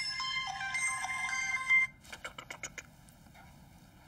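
Mobile phone ringtone playing a simple stepped melody, cutting off suddenly about two seconds in. A few quick clicks follow.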